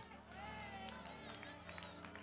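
Faint sound of a church hall: distant voices from the congregation over soft, steady held tones.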